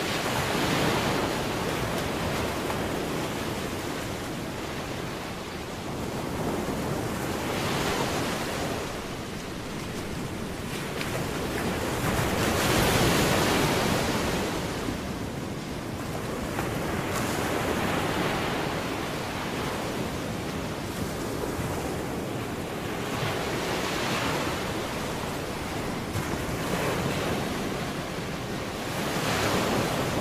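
Ocean surf: waves washing in and drawing back, swelling and fading every five or six seconds.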